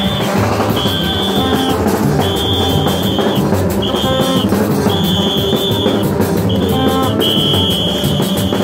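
Gagá band playing: drums and low tones from PVC-tube vaccine trumpets in a steady interlocking rhythm, with a shrill whistle sounded in about seven long blasts over the top.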